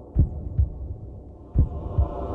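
Heartbeat sound effect: deep double thumps, the pairs repeating about every 1.4 seconds, over a low steady hum.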